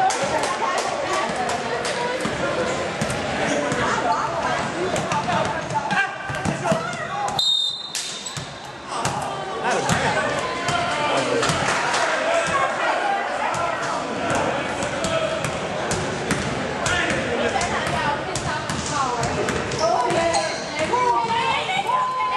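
Basketball bouncing on a hardwood gym floor, with players' voices and shouts echoing in a large hall.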